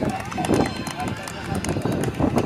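Indistinct voices of children and adults talking over one another, with a steady noisy rustle underneath and scattered small knocks.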